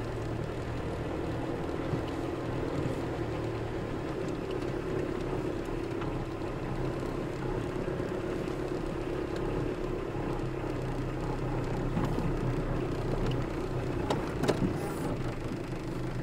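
Car engine and tyre noise heard from inside the cabin while driving slowly on a rough unpaved road: a steady hum with a low drone, with a few short louder sounds near the end.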